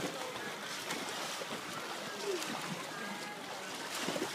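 Steady splashing and churning water from swimmers racing backstroke, with faint voices of onlookers in the background.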